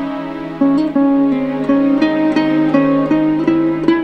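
Soft background music on plucked strings, guitar-like: a held note fades out, then a slow run of single notes begins a little over half a second in, about three notes a second.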